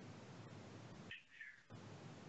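Near silence: faint room hiss, with two brief high chirps about a second in.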